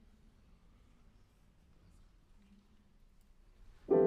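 Near silence, then just before the end a single loud piano chord is struck and left ringing, the opening sound of a contemporary piece for grand piano.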